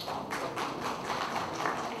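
Audience applauding: many hands clapping in quick, irregular claps.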